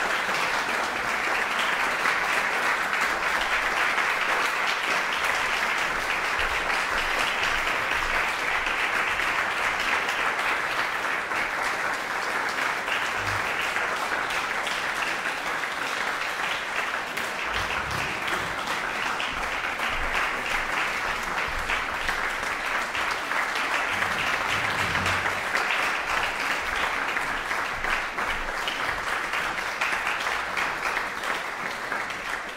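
Audience applauding steadily at the end of a solo piano performance, a dense even patter of many hands clapping.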